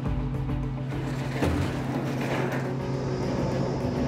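A fishing boat's engine running in a steady low drone, under a sustained background music score, with one dull knock about a second and a half in.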